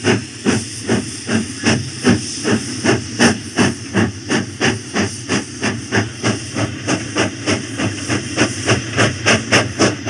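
Battery-operated toy steam train running on its track, with a steady steam-engine chuffing and hiss of about two and a half chuffs a second.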